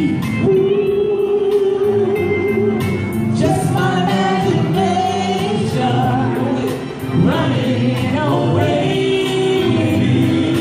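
A live male vocal group singing in harmony over backing music, several voices holding chords under a higher lead line.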